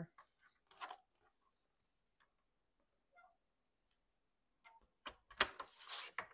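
A sliding paper trimmer cutting a thin sliver off a sheet of paper: a short knock, then a brief rasp of the blade running along the rail. Near the end there is paper rustling and a sharp click as the sheet is handled on the trimmer.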